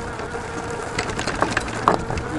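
Carbon-fiber fat-tire e-bike clanking and rattling as it rides over very rough ground, with a few irregular sharp knocks, the loudest near the end, over a faint steady hum. The knocks come from parts jostling and the suspension forks rebounding and hitting.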